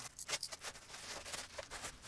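Faint rustling and crinkling of a plastic mailer bag being handled, a string of short, scattered crackles.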